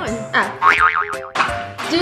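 A cartoon "boing" sound effect, a springy tone that wobbles up and down several times, over background music.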